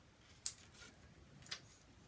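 Two light clicks of cardstock being handled and set down on a hard work surface, a sharp one about half a second in and a softer one about a second later.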